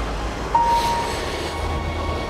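A large vehicle passing close by: a low rumble with a hiss that swells and fades. Soft background music plays over it, with a held note coming in about half a second in.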